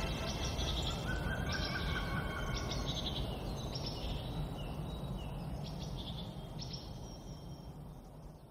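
Bird chirps, short pitched calls repeating every half-second to second, over a low rumbling noise, the whole slowly fading out.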